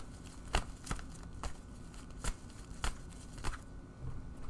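Tarot deck being shuffled by hand, with about six sharp snaps of the cards at uneven intervals.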